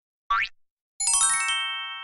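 Cartoon sound effects: a short rising whoop, then about a second in a quick downward run of bell-like chime notes that ring on and fade away, a magical reveal cue.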